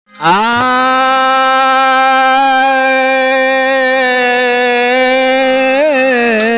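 A man singing one long held "aah" to open a Bhojpuri purvi folk song. He slides up into the note, holds it steady with slight wavers, and bends the pitch near the end.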